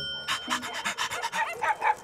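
A desk service bell rings out and fades in the first second. Over it, dogs pant and give many short yips and whines.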